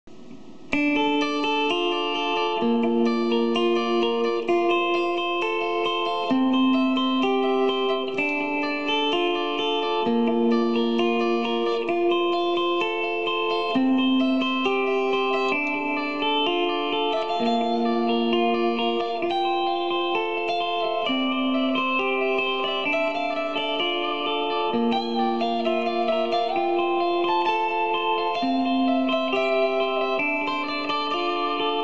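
Gibson Les Paul electric guitar in Nashville tuning playing a slow melody of layered, held notes built up with live looping. It starts just under a second in.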